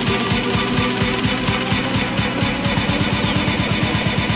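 Electro dance music at a build-up: a repeating drum roll that gets faster and faster, with a falling sweep coming in about two-thirds of the way through.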